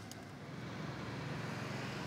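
Small motor scooter engine running as it approaches along the road, its low hum growing gradually louder.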